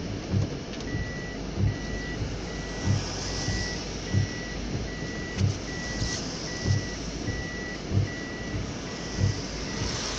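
Inside a vehicle driving in rain: tyre and rain noise, with the windscreen wiper thumping at the end of its strokes about every 1.25 s. From about a second in, a high electronic beep repeats about every 0.6 s.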